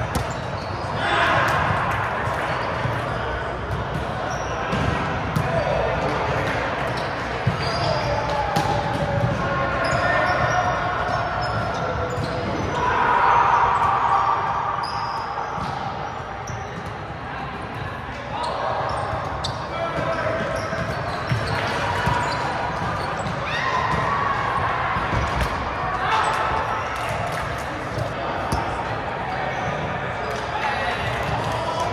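Busy, echoing sports hall during volleyball play: players' voices calling and chattering, with repeated sharp thuds of volleyballs being hit and bouncing on the hardwood floor.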